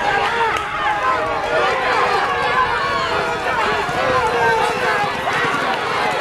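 A crowd of spectators shouting and cheering all at once, without a pause, urging on the horses during a race.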